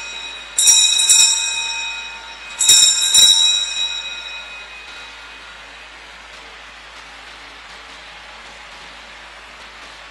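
Altar bells rung at the elevation of the consecrated host. Two bright, ringing peals come about two seconds apart, each a quick double strike whose high tones die away over a second or two. Quiet room tone follows.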